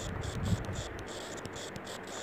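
A cricket chirping steadily in the background in rapid even pulses, with the soft taps and rubbing of handwriting on a tablet touchscreen, the loudest tap about half a second in.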